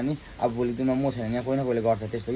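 A man speaking; the speech was not transcribed.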